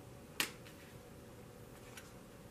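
A tarot card snapped down onto the table as it is laid in a spread: one sharp snap about half a second in, followed by a faint softer tap.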